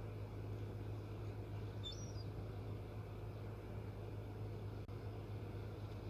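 A steady low mechanical hum, with a single faint high chirp about two seconds in.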